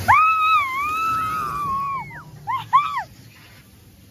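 A young child squeals for about two seconds in one long, high-pitched call that wavers a little, then gives two short squeals. It is a squeal of thrill.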